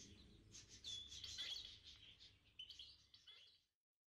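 Faint bird chirps and short trills, a few scattered calls that stop shortly before the end.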